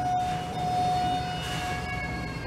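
A steady high-pitched tone held for about two seconds, with fainter higher tones joining near the end, over a low hum.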